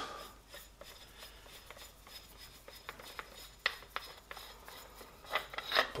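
Rifle suppressor being unscrewed by hand from the barrel: faint rubbing and scraping of metal threads, with scattered light clicks, one sharper tick about three and a half seconds in, and a few more knocks near the end.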